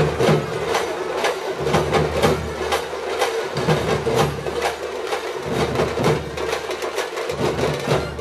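Folk drums beaten in a steady rhythm, sharp regular strokes about two to three a second, over a steady droning tone from the stage sound system.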